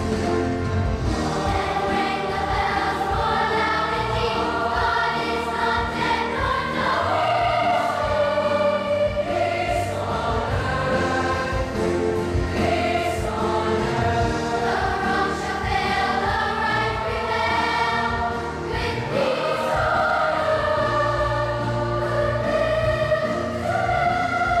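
A large children's choir singing, many voices together in long held phrases.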